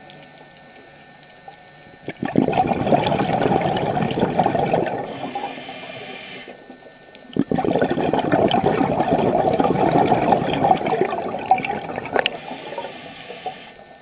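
Scuba diver's exhaled bubbles gurgling out of the regulator underwater in two long breaths, the first starting about two seconds in and the second about halfway through, with quieter inhalations between.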